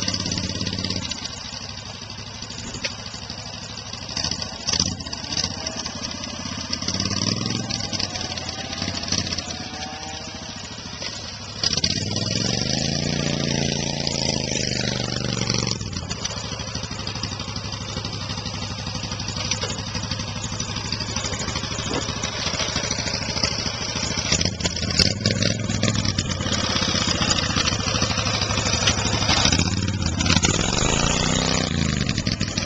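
Lifted gas golf cart's engine running, its pitch rising and falling several times as the cart is driven through brush, with the strongest rev about twelve seconds in. A steady high hiss runs under it.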